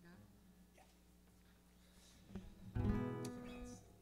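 Acoustic guitar strummed once about three seconds in, the chord ringing out and fading within about a second, after a quiet stretch with a faint steady hum.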